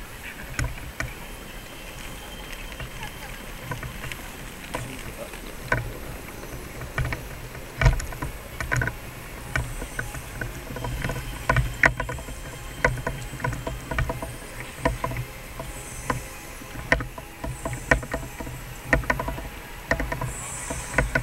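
Walking ambience: footsteps and knocks from a handheld camera being carried, heard as irregular clicks and low thumps that grow more frequent in the second half, over the murmur of a crowd's voices.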